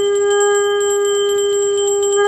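A loud, steady held tone with overtones, from a ritual instrument sounded during a Hindu puja, with faint quick ticking over it.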